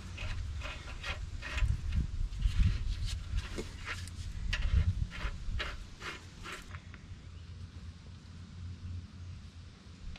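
Scattered short clicks and taps of metal parts being handled at a truck's front wheel hub and brake drum, over an uneven low rumble. The clicks stop about two-thirds of the way through.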